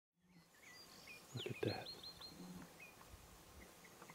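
Faint outdoor ambience with a small bird calling: a falling whistle, then four quick high chirps about a second and a half in, with scattered soft chirps after.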